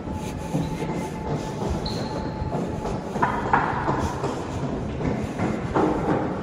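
Luggage wheels rolling along a tiled corridor floor: a steady rumble with small clicks each time the wheels cross a tile joint, and a thin whine for the first two or three seconds.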